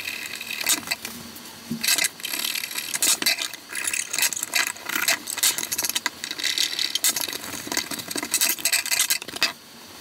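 A restored folding knife being handled, its blade swung open and shut: a dense run of sharp metallic clicks, snaps and scraping from the blade, spring and brass bolsters, easing off briefly near the end.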